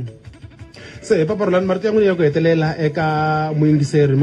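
A man's voice over background music, starting about a second in and drawing out one long held note about three seconds in.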